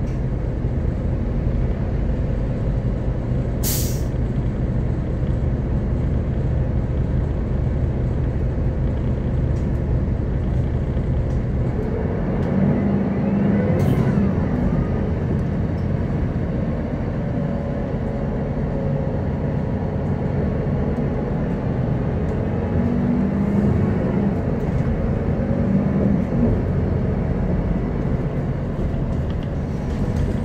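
Heard from inside the cabin of a 2007 Solaris Urbino 12 III city bus, its DAF PR183 diesel engine and ZF 6HP-504 automatic gearbox run steadily under way. A short hiss of compressed air comes about four seconds in. Later, a gear whine rises and falls twice as the bus pulls away and changes speed.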